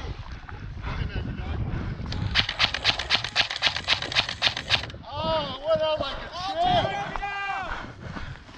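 Airsoft rifle firing a rapid string of about fifteen shots, around six a second, lasting two and a half seconds. Before it comes a low rustle of movement through dry grass. After it, raised voices shout from a distance.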